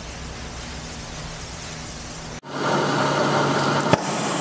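A low, steady hum; then, after a sudden cut about two and a half seconds in, the steady hiss of an oxy-fuel powder spray-welding torch metallizing an electric motor shaft turning in a lathe, over a low machine hum, with a brief click near the end.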